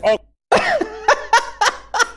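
A man's voice in about five short, sharp bursts in quick succession, following a moment of dead silence.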